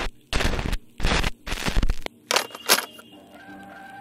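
Five short bursts of harsh static noise, a VHS tape-glitch sound effect, then faint music with held notes coming in about three seconds in.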